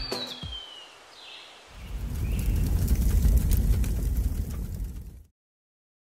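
Logo-animation sound effects: a high whistling tone that slides down at the start and a brief soft swoosh, then a low rumble from about two seconds in that cuts off suddenly near the end.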